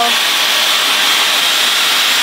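Dyson Supersonic hair dryer running on its highest speed and heat setting, a steady, high-pitched rush of air.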